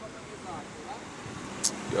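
Road traffic on a city street, with a steady low engine hum from the vehicles coming toward the stop. A short, sharp high hiss comes near the end.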